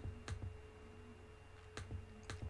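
Three or four quiet computer mouse clicks, spaced irregularly, as the Packet Tracer simulation is stepped forward, over a faint steady hum.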